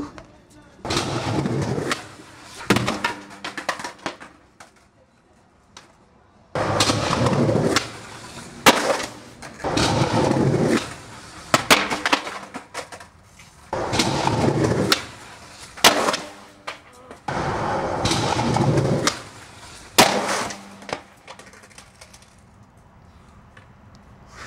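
Skateboard wheels rolling on concrete in about five runs of one to two seconds each, with sharp clacks of the board striking the ground between runs.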